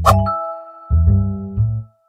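A single bright ding, struck once at the start and ringing on for about a second and a half as it fades, over light background music whose low bass line stops briefly and comes back about a second in.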